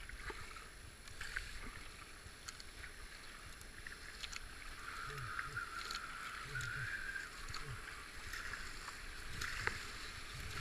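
Fast river water rushing through whitewater rapids, with the splashes and knocks of a kayak paddle's strokes coming every second or two.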